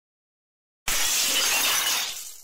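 A transition sound effect: a sudden loud crash of bright, crackling noise starting just under a second in, holding for about a second and then fading away.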